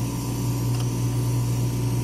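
Steady mechanical hum of a cuvette-forming analyzer running with its panels open: a low steady drone with a faint higher whine and a little hiss.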